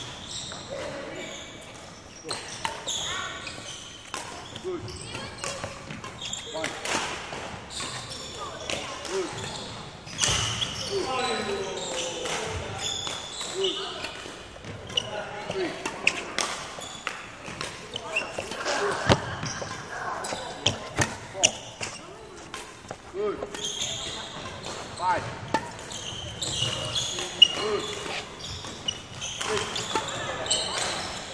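Footsteps and repeated sharp thuds on a wooden sports-hall floor as a player moves about the badminton court, with indistinct voices echoing in the hall.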